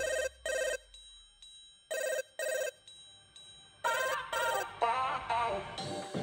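Telephone ringing, played as a sound effect in the performance's music track: three double rings about two seconds apart. A voice begins near the end.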